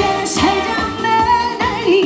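A woman singing a Korean pop song live into a microphone over amplified music with a steady beat, holding one long note near the middle.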